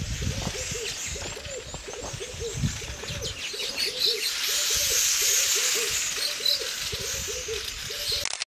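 A bird giving a long run of short, low hoots, about three a second. A steady high hiss swells in the middle, and a low rumble sits under the first three seconds.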